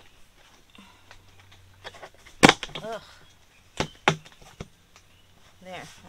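Plastic snap-on toilet seat being pressed onto the rim of a five-gallon bucket: a loud, sharp snap a little before halfway, then three smaller clicks over the next couple of seconds as it clips into place.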